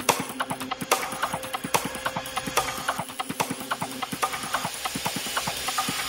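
Psytrance breakdown with no kick drum: rapid, irregular clicking, clopping percussion over sustained synth tones.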